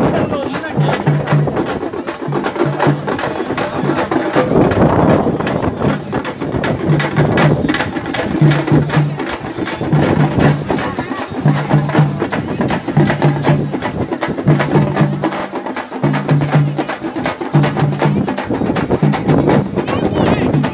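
A band of Tamil parai frame drums beaten with sticks in a fast, driving rhythm, with a low note pulsing about every second and a half, over the voices of a crowd.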